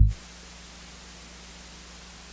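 A deep synth bass note from a Roland JP-8080 cuts off right at the start, leaving a steady hiss with a faint low hum: the noise floor of the synthesizer's line signal between notes.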